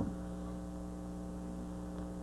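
Steady electrical mains hum with a stack of overtones, a low constant buzz underlying the recording.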